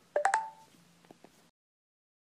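A short two-note electronic beep from a laptop, a quick alert tone with a click at its start, followed by a few faint clicks, then the sound cuts to dead silence.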